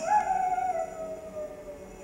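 A single note from the concert band swoops up at the start, then glides slowly down in pitch over nearly two seconds as a sliding, siren-like effect. The rest of the band drops out beneath it and comes back in just after.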